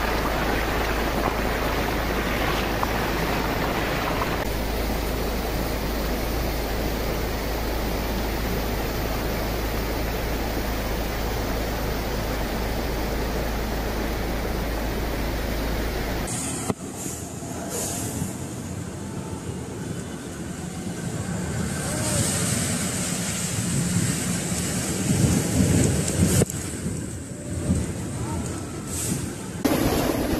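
Storm noise of rain and wind: a steady, even hiss, cutting suddenly about halfway through to a quieter, more uneven stretch of rain that grows louder toward the end.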